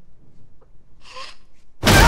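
Tense near-quiet with a short muffled gasp from a woman about a second in, then just before the end a sudden loud jump-scare crash with a woman screaming.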